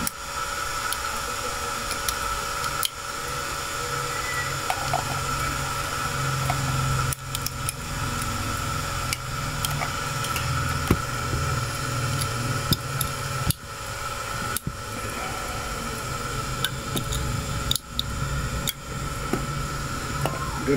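Transistor radio giving out steady static hiss with a faint whine and a low hum, cutting out briefly about nine times.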